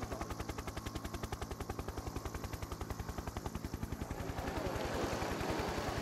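Helicopter rotor chop: a rapid, even beat of short pulses over a steady engine hum.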